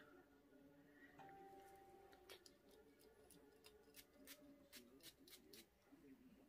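Near silence: room tone with a series of faint, separate clicks through the second half.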